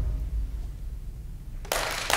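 The final chord of a choir with a hand drum dies away in the hall's reverberation, leaving a faint low rumble. Near the end, applause breaks out abruptly.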